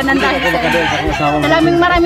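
A rooster crowing once, a harsh call about a second long near the start.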